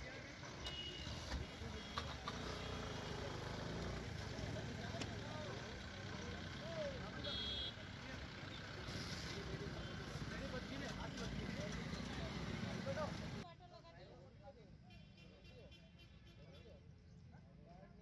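Roadside traffic ambience: passing vehicles running, with indistinct voices of onlookers and a couple of short high beeps. About 13 seconds in, it drops to a much fainter background.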